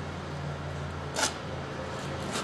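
Steady low hum of the 1977 Plymouth Fury's 318 cubic-inch V8 idling, with a short hiss about a second in.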